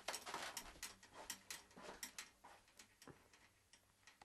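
Faint, irregular tapping and clicking noises in a small room, growing sparser and quieter toward the end.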